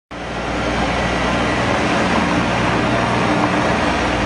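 Small tractor's engine running steadily, with a loud broad hiss over it.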